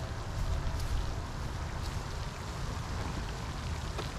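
Wind buffeting the microphone: a low, fluctuating rumble over a steady rushing hiss.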